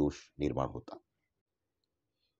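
A narrator's voice speaking for about the first second, then silence.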